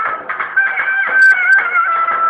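Turkish folk wedding music: a shrill, high melody line holding a long, wavering note. Two brief sharp clicks come a little past halfway.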